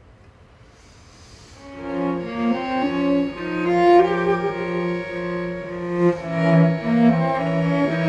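String quartet of two violins, viola and cello playing. After a quiet opening the ensemble comes in about two seconds in, with a low note repeated under moving upper lines.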